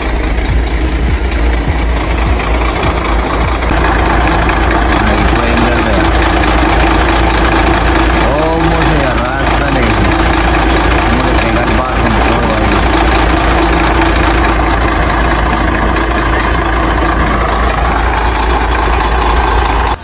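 Chevrolet C60 truck engine idling steadily, heard up close as a constant low rumble.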